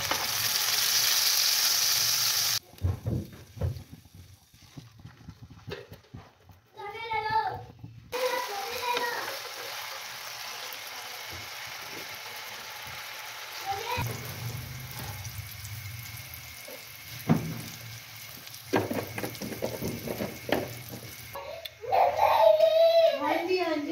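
Chicken chapli kebabs sizzling as they fry in oil on a flat iron tawa. The sizzle is loud for the first couple of seconds, then cuts off suddenly and gives way to a quieter, steady sizzle with occasional clicks of a metal spatula.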